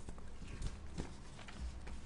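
Loose sheets of paper being handled and set down on a wooden lectern close to its microphone, making a few light, irregular knocks and taps.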